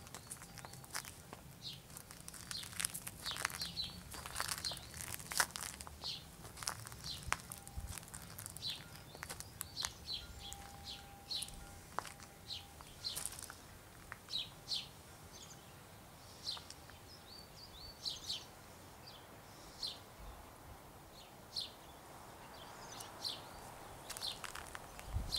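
Small birds chirping repeatedly outdoors: many short, high chirps, often falling in pitch, coming every second or so.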